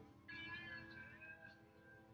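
Quiet music playing. About a third of a second in, a high, slightly wavering note with many overtones rises out of it and fades over about a second.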